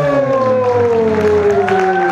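A long siren-like tone sliding slowly and steadily down in pitch over the music, with a second, shorter tone rising briefly near the end.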